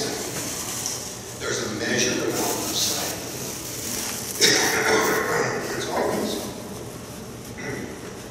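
Speech: a man's voice through a public-address microphone in a hall, in two phrases with short pauses.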